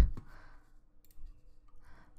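A few faint computer mouse clicks in a quiet room, with a soft breath near the end.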